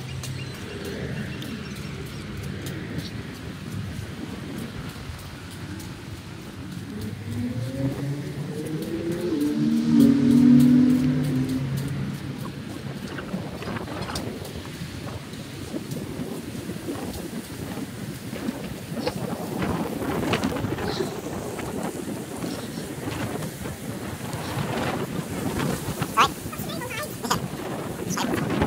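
Wind rumbling on the microphone while walking outdoors, with a pitched hum that rises and swells about eight to eleven seconds in, the loudest moment. Scattered clicks and knocks come in the second half.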